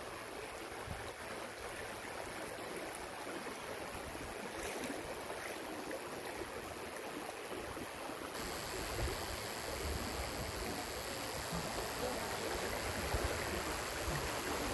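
Steady outdoor noise of wind and moving floodwater, with gusts of wind rumbling on the phone's microphone, getting a little louder in the second half.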